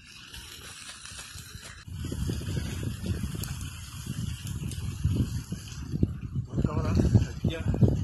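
Rubbing and low rumbling handling noise on a chest-worn camera's microphone, starting about two seconds in as the wearer moves, with a man's voice near the end.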